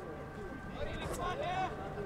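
Faint distant voices on an open-air football ground, with a shout or call about a second in, over a steady low background noise.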